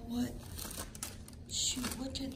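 Paper envelopes and letters rustling as a hand handles a stack of mail, with a sharper crinkle near the end.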